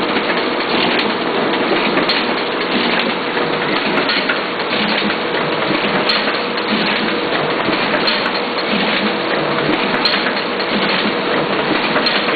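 Duplo DBM-400 booklet maker running a job: a steady mechanical noise with a faint even hum and irregular clicks as it feeds, stitches and folds the paper sets.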